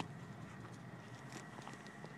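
Faint steady road and engine rumble inside a moving car's cabin, with a few light ticks.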